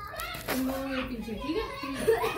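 A child's voice chattering and calling out without clear words, with children playing.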